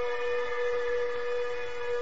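Huangmei opera music with one pitched note held steadily throughout, with overtones above it.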